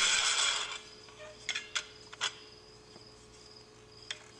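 Metal split reel being handled and its halves fitted together: a loud metal rubbing scrape in the first second, then three light clicks.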